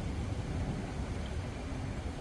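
A steady low rumble of outdoor background noise, with no distinct sound event standing out.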